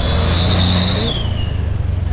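Street traffic: motorbike and car engines passing close, with a steady low rumble. A high whine holds for about a second and then slides down in pitch.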